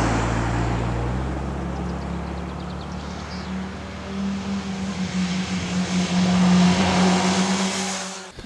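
Sport motorcycle engine running as the bike rides along a curving road. The note is loud at first, eases off, then swells again as the bike comes closer, loudest near the end.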